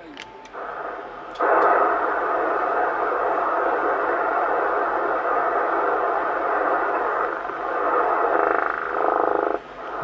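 Yaesu FT-450 HF transceiver receiving in upper sideband on 27.540 MHz: steady band-limited hiss and static from its speaker, rising about a second and a half in and cutting off just before the end. Only band noise comes back after the CQ call; no station answers.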